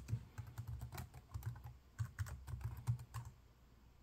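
Computer keyboard being typed on: an irregular run of quick key clicks as a command is entered, stopping shortly before the end.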